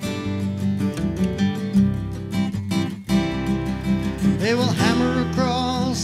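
Acoustic guitar strumming in a gentle country-style song, between sung lines; a voice starts singing again about four and a half seconds in.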